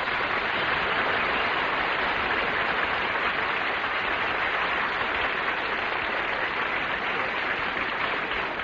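Studio audience applauding steadily after a song, heard on a 1950s radio broadcast recording.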